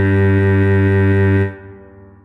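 Cello holding a long, low tied note (a low G) with a full, steady tone. It is released about one and a half seconds in and dies away into a rest.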